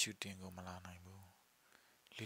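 A man's voice reading a story aloud in Burmese, breaking off about one and a half seconds in.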